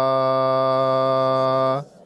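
A man chanting in Pali holds the last syllable of 'bhadantā' as one long steady note, which stops shortly before the end.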